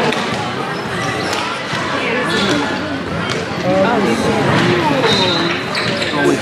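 Indoor field hockey play: several sharp knocks of sticks striking the ball and the ball hitting the boards, heard in a large hall. Players' shouts and spectator voices run beneath them, rising in the second half.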